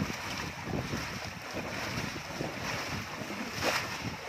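Shallow water rushing over rock and sloshing through a woven basket as it is swept through the current, with a louder splash near the end.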